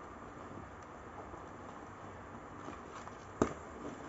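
Faint handling of a fabric lunch bag and its strap, with small ticks and one sharp click about three and a half seconds in as a plastic strap clip is fastened to the bag.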